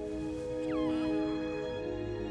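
Sustained chords of film score music, with a brief high, wavering coo from Grogu, the small green alien infant, just over half a second in.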